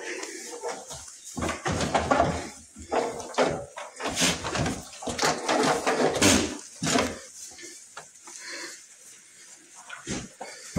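Goats pulling and chewing hay at a wooden feeder: irregular rustling and crunching of dry hay, with scattered knocks.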